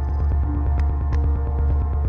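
Background score: a steady, low throbbing drone with faint held tones above it and a few light ticks.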